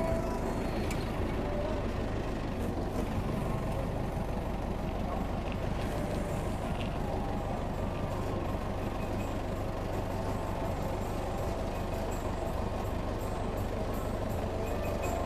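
Old forklift's engine running steadily as the forklift is driven.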